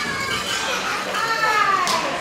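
High-pitched children's voices shouting and calling out, drawn-out calls that slide in pitch, with a sharp click near the end.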